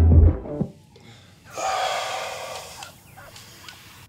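Background music cuts off about half a second in; then a man gasps, one long breathy intake lasting about a second and a half.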